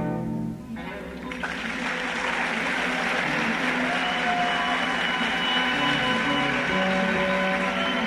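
Big band music: a loud brass passage cuts off within the first second, and after a short lull the band plays on more softly, with sustained chords over a steady noisy wash.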